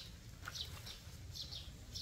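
A small bird chirping, short high chirps repeated about every half second, some in quick pairs, over a faint low rumble.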